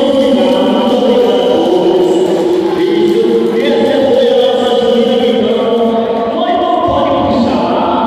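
A group of voices singing together in held notes that change every half second or so, with little bass or drum underneath.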